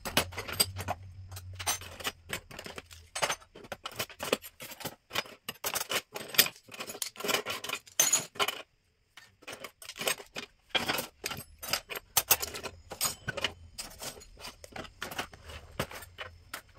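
Metal cutlery and kitchen utensils clinking and clattering as they are taken out of a kitchen drawer and set down. The clinks are quick and irregular, with a short pause about nine seconds in.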